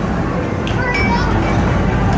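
Arcade basketball machine in play: a few short knocks of basketballs hitting the backboard and rim, under loud arcade din with background music and crowd chatter.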